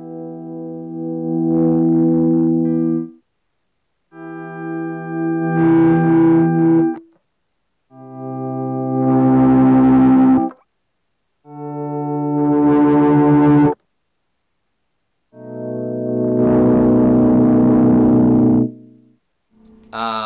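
Electric guitar (Gibson SG Junior) through an amp, playing five chords in volume swells with an Ernie Ball volume pedal: each chord fades in gradually from silence, holds, then cuts off sharply, with short silences between. The slow rise shows this pedal's gradual volume build, while the sudden cut-off reflects its severe ramp down.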